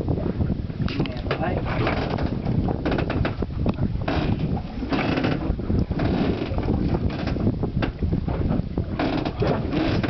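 Fish and ice being shifted around in a plastic ice box (cooler): irregular clicking, rattling and crunching of ice with rustling plastic bags, coming in bursts, over a steady rumble of wind on the microphone.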